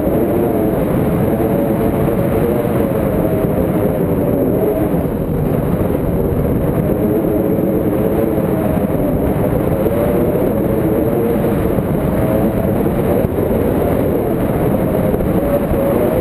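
Steady, loud wind rush over the microphone of a pole-mounted camera on a paraglider in flight, low and rumbling, with a faint wavering low tone running through it.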